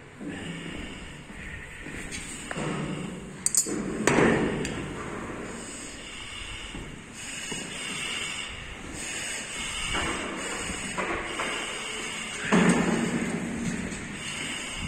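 Knocks and thuds in a fire-damaged room, with a couple of sharp clicks about three and a half seconds in and a louder burst of clatter near the end.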